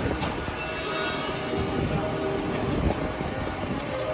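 Marching band playing a soft passage of sustained held chords over a low rumble, with a single sharp click just after the start.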